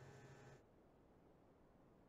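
Near silence: faint room tone, with a low hum that cuts off about half a second in.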